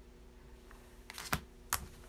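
Tarot cards being handled on a table: a few sharp clicks and taps of card against card and tabletop, beginning about a second in, with the two loudest near the middle and toward the end. A faint steady hum of room tone lies underneath.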